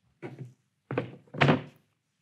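A chair being moved and set down on a stage floor: three short thunks, the last and loudest about a second and a half in.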